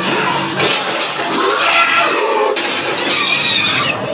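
Loud, raspy creature shrieks and snarls from a zombie-like infected, several wavering squeals one after another.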